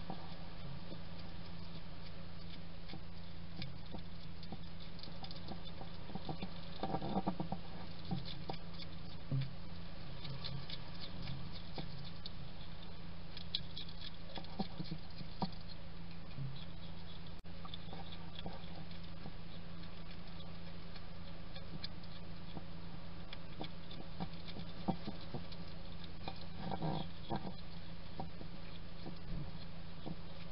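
Wild European hedgehog eating from a ceramic dish: quick, irregular chewing and smacking clicks, with denser bursts about seven seconds in and again near the end. A steady low hum runs underneath.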